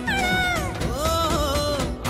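Tamil film song: a high sung vocal line sliding down in pitch, then wavering, over a steady beat.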